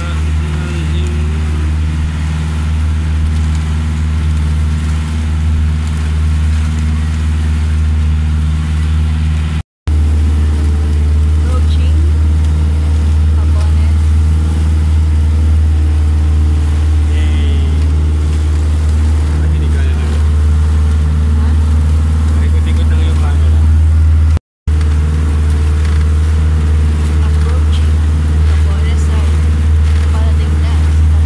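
Outrigger bangka boat's engine running at a steady cruising speed, a loud, even low hum.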